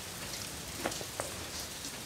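Steady rain, an even hiss with a few sharp ticks of drops about a second in.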